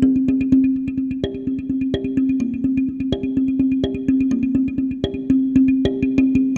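A twelve-tone hardwood tongue (slit) drum played with two mallets in a fast, even roll of about eight strokes a second. A low note repeats through the roll, with higher notes picked out over it, in a C minor chord progression.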